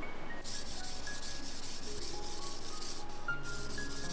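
Bamboo flute being sanded by hand: quick, even rubbing strokes, several a second, with a brief pause near the end. Faint, sparse music notes sound underneath.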